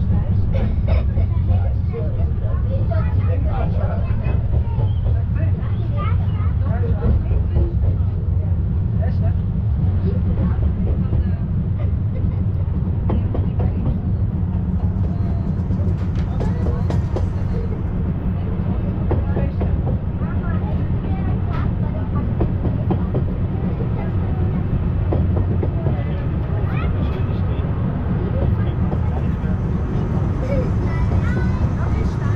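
Open passenger carriages of the Brienz Rothorn Bahn rack railway running steadily along the track with a continuous low rumble, heard from on board, with passengers talking over it.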